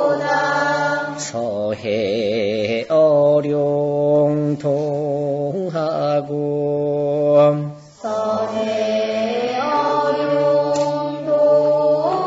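A single voice chanting a classical Chinese poem in the traditional Korean seongdok style. Syllables are drawn out on long held pitches, with a wavering ornament about two seconds in and a brief break for breath about two-thirds of the way through.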